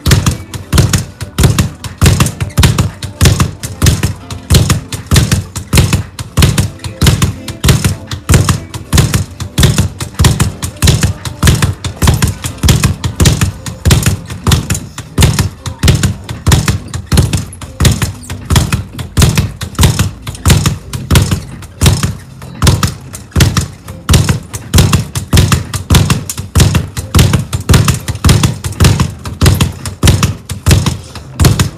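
Speed bag being punched in a fast, steady rhythm, the bag rattling off its wall-mounted rebound platform in a continuous run of rapid strikes.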